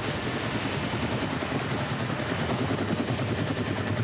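Navy Sea King recovery helicopter hovering, its rotor and engines making a steady fast chop.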